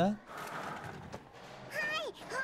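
A high-pitched, childlike female anime voice begins speaking near the end, after a stretch of low, even background noise; it is a teacher character opening homeroom.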